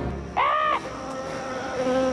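A short cry that rises and falls in pitch about half a second in, followed by a steady, slightly wavering buzz like that of a flying insect.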